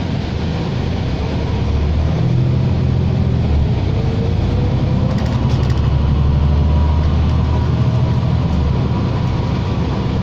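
A New Flyer Xcelsior XD60 articulated diesel bus heard from inside the cabin while under way. The engine's low drone grows louder as the bus gathers speed, a faint whine rises in pitch a couple of seconds in, and road and tyre noise runs underneath.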